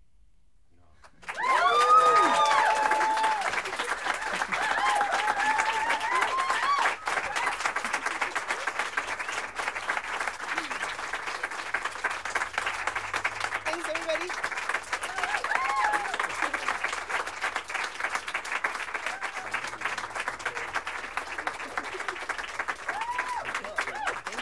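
Audience applause with whoops and cheers, breaking out suddenly about a second in after a brief hush, with the loudest cheering right at the start.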